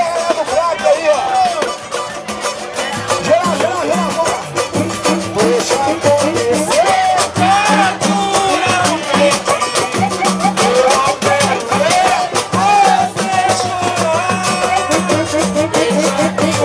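Live samba played by a roda: voices singing over strummed strings and pandeiros, with low hand-drum beats joining about three seconds in.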